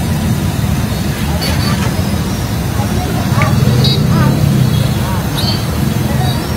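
Street ambience: a steady low traffic rumble with voices in the background.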